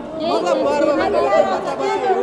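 Several men talking at once, overlapping chatter with no single clear voice.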